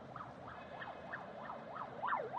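Emergency vehicle siren in a fast yelp, its pitch sweeping up and down about three times a second, heard from inside a car. It is faint and grows louder toward the end.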